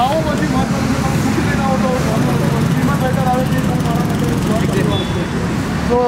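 A man talking to a group over the steady low rumble of street traffic.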